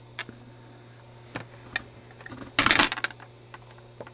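Small clicks and taps of hobby tools being handled and set down on a wooden tabletop, with one short, louder clatter about two and a half seconds in, over a faint steady low hum.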